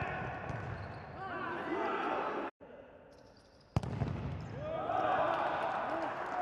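Indoor futsal play in a large, echoing hall: shoes squeaking on the court and players shouting, with a sharp ball strike about four seconds in. The sound cuts out briefly about two and a half seconds in.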